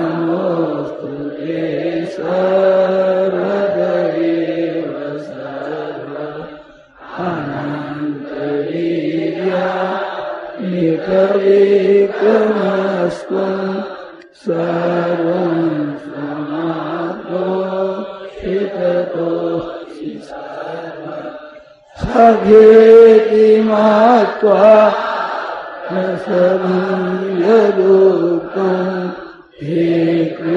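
Sanskrit prayer chanted in a steady recitation tone, in long phrases of several seconds with brief breath pauses about seven, fourteen and twenty-two seconds in.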